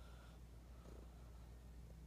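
Domestic cat purring faintly and steadily, held close.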